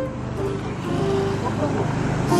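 A car passing on the paved road: steady engine and tyre noise that swells a little during the first second, under faint background chatter.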